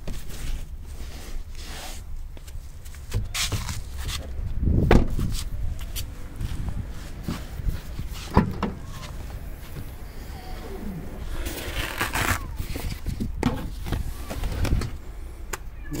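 Knocks, clicks and rustling from the rear door, tailgate and boot floor of a car being opened and handled, over a low rumble. There is a heavy thump about five seconds in, a sharper knock about eight seconds in, and a rustling stretch around twelve seconds.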